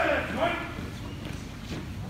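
A loud, drawn-out shouted call, like a drill cadence, in the first half-second, over the hard-soled footsteps of a column marching on a concrete floor.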